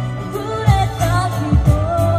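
A woman singing into a microphone over a musical accompaniment with a steady beat.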